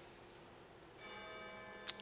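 Near silence, then about a second in a faint bell-like ringing tone with several pitches sounding together, holding for just under a second, followed by a soft click.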